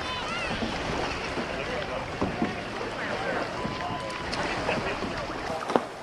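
Outdoor crowd ambience: scattered distant voices over a steady rushing hiss of wind on the microphone.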